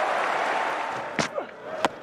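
Stadium crowd applauding and cheering a boundary, dying away in the first second or so. Then come two sharp knocks, the second and louder one near the end the crack of a cricket bat striking the ball.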